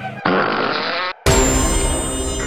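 Horror sound design for a jump scare: a harsh, raspy noise for about a second cuts off abruptly. Just after the middle, a sudden loud music stinger hits and rings on with many sustained tones over a deep rumble.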